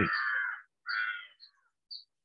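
A crow cawing twice, the first call at the start and the second about a second in, followed by a few faint, short high chirps.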